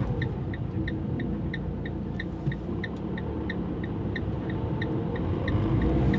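A van's dashboard signal ticking steadily, about three short high tones a second, over the van's engine and road noise.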